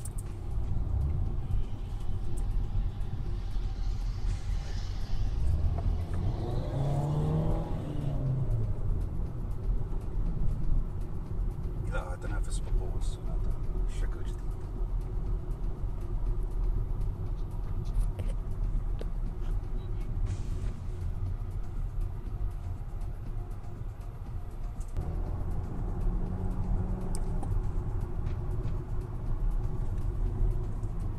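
Cabin sound of a 2015 Hyundai Sonata driving slowly: a steady low engine and road rumble, with a brief rise and fall in pitch about six to eight seconds in.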